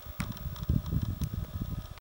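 Wind rumbling and buffeting on a handheld camcorder's microphone, with a couple of short clicks of handling noise.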